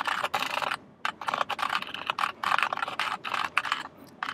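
Fast typing on a computer keyboard: a dense run of key clicks with a short pause about a second in.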